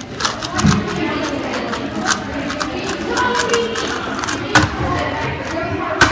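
Rubik's cubes being twisted fast by hand, giving a quick, irregular run of plastic clicks and rattles, with children's voices murmuring underneath.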